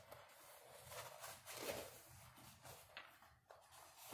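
Faint rustling of the protective release paper being peeled slowly back off a diamond painting canvas, with a small click about three and a half seconds in.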